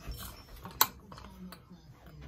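A sharp click just under a second in, a fainter click about half a second later, and a few small ticks from hands handling the stereo receiver and camera, over quiet room tone.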